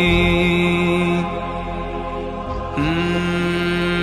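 Nasheed vocals: a long, steadily held sung or hummed note that fades quieter after about a second, then a fresh held note comes in near three seconds.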